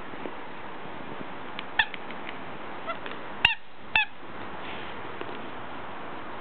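Short squeaks from a dog's squeaky toy as it is bitten, four or so over about two seconds, the loudest two about half a second apart near the middle, over a steady hiss.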